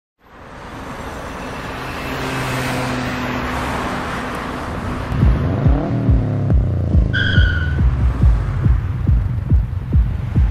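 Road traffic passing in a steady rush of engine and tyre noise. About five seconds in, a heavy bass beat thumps in at roughly two to three beats a second. A short high tone sounds about seven seconds in.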